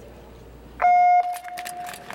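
Electronic starting signal for a short-track speed skating race: a sudden, loud, steady beep about a second in, held for under half a second and then fading to a weaker lingering tone. Short scrapes of skate blades on ice follow as the skaters push off.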